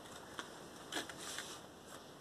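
Faint rustling of cardstock with a few light ticks as a fold-out paper flap on a scrapbook album is lifted open.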